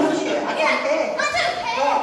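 Indistinct voices talking over one another.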